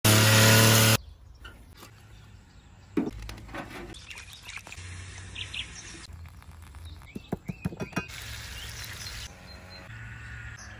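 Birds chirping over outdoor ambience, with a quick run of sharp clinks from metal cookware being handled about seven seconds in. It opens with a loud, pitched one-second tone that cuts off abruptly.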